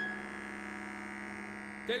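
A steady hum: a low tone with a fainter high whine above it, holding unchanged.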